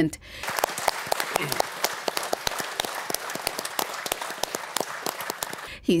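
A roomful of people applauding in a parliament chamber, a dense steady clapping that swells in just after the start and is cut off shortly before the end.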